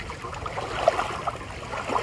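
Lake water lapping and splashing against shoreline rocks, with a small splash a little before halfway and a wave breaking over the rocks near the end.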